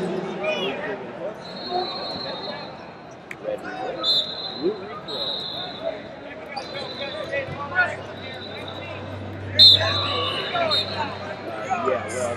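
Busy wrestling-arena ambience: referee whistles blowing from other mats in several held, slightly trilling blasts, over crowd chatter and scattered thumps, with one sharp loud knock about two-thirds of the way through.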